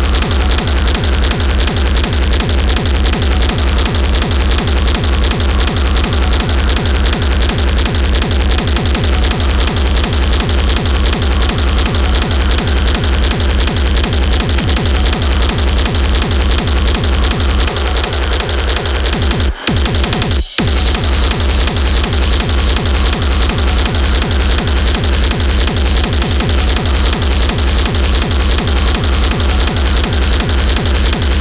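High-tempo industrial techno with a heavy kick drum under dense, aggressive distorted noise. The track briefly cuts out twice about two-thirds of the way through before the beat returns.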